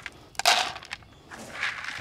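Dry feed pellets clattering onto a plastic dish, with a sharp rattle about half a second in, then softer scattered rattling and rustling as more feed is handled near the end.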